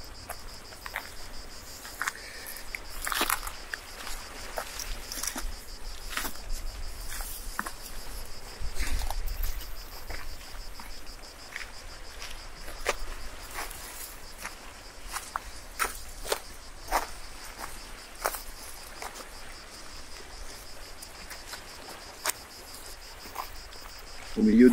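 A steady, high-pitched chorus of insects chirring in dry scrub, with footsteps and scattered sharp clicks and crunches of a hiker walking on a stony trail.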